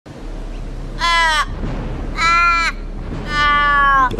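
An Australian raven calling three times, with long drawn-out wailing caws that each fall away in pitch at the end. The third call is the longest. A faint low hum runs underneath.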